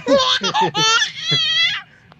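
A baby laughing hard in a run of about four high-pitched, wavering bursts that stop shortly before the end.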